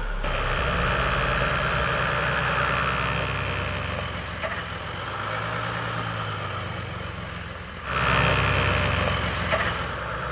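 Jeep Wrangler Rubicon's engine running at low revs as the SUV crawls up bare rock, steady, turning abruptly louder about eight seconds in.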